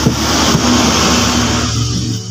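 A loud, grainy rush of noise that fades out after about a second and three-quarters, over background acoustic guitar music.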